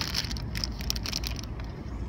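Clear plastic bag crinkling as the bagged battery cables with alligator clips are handled, with small crackles in the first second that die down toward the end, over a steady low background rumble.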